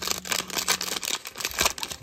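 2024 Bowman baseball card pack wrapper being torn open and crinkled by hand: a quick, irregular run of crackles and rips.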